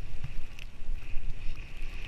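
Skis running through deep powder snow, heard on a head-mounted action camera with wind buffeting the microphone: a steady low rumble under a hiss, with a few faint clicks.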